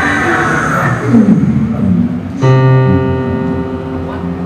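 Big band music: a low sliding fall about a second in, then a sustained full chord struck suddenly about two and a half seconds in and held.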